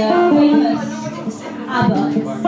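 A voice singing held, stepping notes live over guitar accompaniment.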